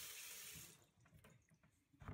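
Tap water pouring into an empty plastic tub, a steady hiss that cuts off less than a second in.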